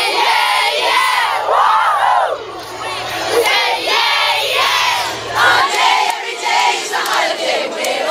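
A crowd of young female fans shouting and singing together, many high voices overlapping. A low hum under the voices cuts off suddenly about five and a half seconds in.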